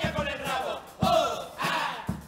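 A men's murga chorus singing together loudly, with beats of a bass drum.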